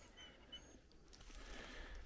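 Near silence: faint outdoor room tone with a couple of faint, short, high chirps in the first half second.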